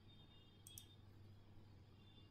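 Near silence with a low steady hum, broken by two faint clicks of a computer mouse a little under a second in.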